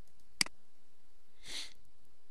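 A single sharp computer-mouse click, then about a second later a short sniff close to the microphone.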